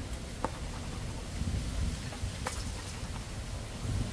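Wind on the microphone, a low steady rumble, with a couple of faint clicks about half a second in and again about two and a half seconds in.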